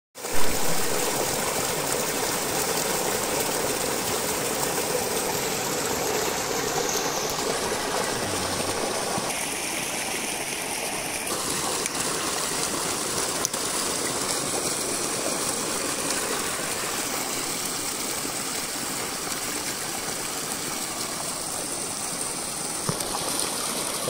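Water rushing steadily through a stream's spillway, with a brief louder burst right at the start.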